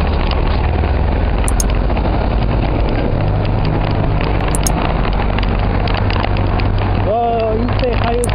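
Wind buffeting the microphone, a loud steady rumble and hiss. A man's voice briefly shows through near the end.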